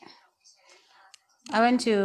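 A short lull of faint room noise with one small click, then a voice starts talking about one and a half seconds in.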